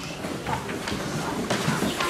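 Faint background murmur of small children with a few short knocks and rustles, as from paper signs being handled.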